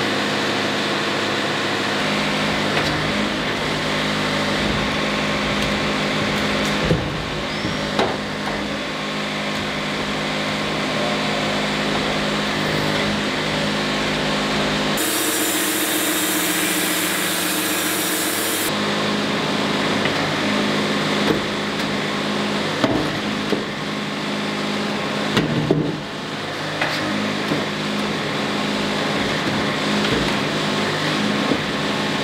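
Wood-Mizer LT70 Super Wide bandsaw mill sawing through a cedar log: a steady machine hum under the hiss of the band blade in the wood, with a few sharp knocks. For a few seconds in the middle the hum drops away and a brighter, higher hiss takes over.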